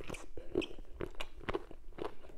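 Close-miked chewing of a mouthful of meat from a bitter leaf soup, in a steady run of moist, crunchy chews about two to three a second.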